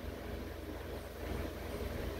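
Steady low background hum with faint even room noise, and no distinct event.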